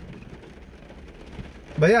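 Steady patter of rain on a car's windshield and roof, heard from inside the cabin, with a man's voice coming in near the end.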